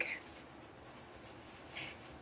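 A pause between spoken phrases: faint room hiss, with one brief soft rustle near the end.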